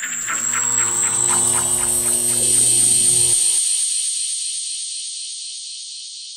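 A produced transition sound effect: fast ratcheting clicks over a low rumble, with tones sliding down beneath a rising high whine. The clicks and rumble stop about three and a half seconds in, leaving a high hiss that slowly fades.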